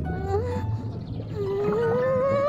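Cartoon underwater sound effect: warbling, gliding tones over a low rumble, heard as if from under the water in a bucket. A longer rising tone starts near the end.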